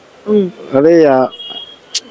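A man's voice making two drawn-out, wordless hesitation sounds, the second one long, while a faint steady high trill of night insects sounds behind it; a short sharp click right at the end.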